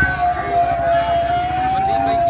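A siren: one long tone, wavering slightly in pitch, over a background of crowd noise.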